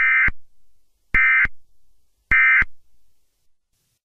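Emergency Alert System end-of-message data bursts: three short bursts of buzzing digital tone, about a second apart. This is the SAME code that marks the end of the alert.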